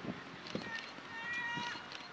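A spectator's shrill, drawn-out shout of encouragement, held for about a second, over the patter of runners' footsteps on a dirt path.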